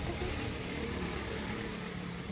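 Steady background rumble and hiss with a faint low hum, like a motor or engine running at a distance.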